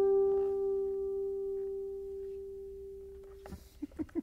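Ko'olau CE-1 custom electric tenor ukulele: a chord left ringing and slowly fading, then muted about three and a half seconds in, followed by a few soft knocks.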